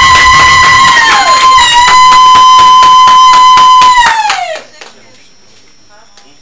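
Applause, with a loud, high, held celebratory cry that breaks off with a downward slide about a second in, then returns and holds until it slides down and stops with the clapping about four and a half seconds in. After that only faint room noise.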